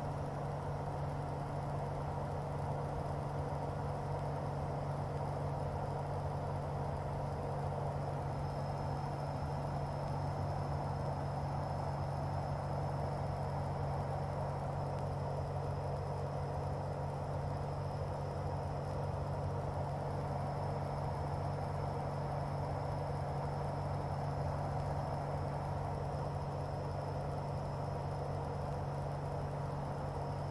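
Cockpit noise of a light aircraft in cruise: the Corvair 3.0 air-cooled flat-six and propeller drone steadily, with airflow hiss and a thin, steady high whine over the top.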